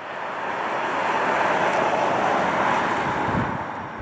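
Tesla Model X electric SUV driving past, heard as tyre and road noise with no engine sound. The noise grows louder over the first second or two and fades toward the end.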